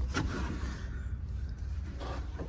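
Rubbing and faint ticks of a phone being handled and moved, over a steady low rumble.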